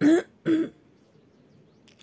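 A woman clearing her throat: two short vocal sounds in the first second, then quiet with a faint small click near the end.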